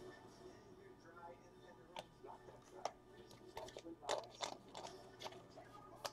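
Faint, irregular clicks and snaps of baseball trading cards being handled and sorted, heard most about two to four and a half seconds in, over a low steady hum.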